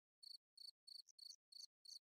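Very faint insect chirping: short, high chirps evenly spaced at about three a second, otherwise near silence.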